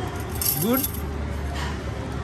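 A brief high clinking jingle about half a second in, under a man's short spoken word, over a steady low background hum.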